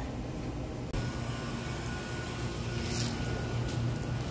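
Steady low hum of a store interior, from ventilation and drink-cooler refrigeration, with a faint high tone joining about a second in.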